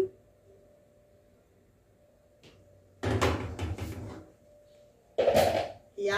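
A metal frying pan set down onto a gas stove's steel grate, scraping and clanking about three seconds in, with a second clunk shortly before the end.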